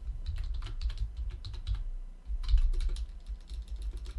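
Typing on a computer keyboard: a quick, uneven run of key clicks with a brief pause about two seconds in, as a password is entered.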